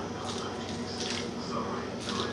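Quiet room with faint wet, squishy mouthing sounds of a baby chewing on a plastic rattle, over a steady faint low hum.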